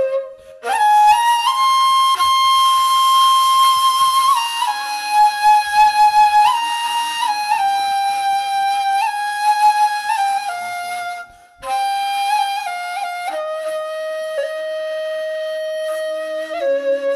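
Solo flute playing a melody of long held notes that step up and down, breaking off briefly for breath near the start and again about eleven seconds in.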